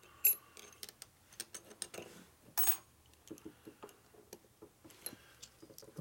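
Light metal-on-metal clicks and ticks as transmission gears, washers and clips are handled and slid on a Harley-Davidson Milwaukee-Eight six-speed gear shaft, with one brief ringing clink about two and a half seconds in.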